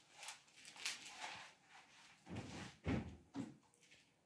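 A few soft knocks and bumps, spaced irregularly, the loudest near the end.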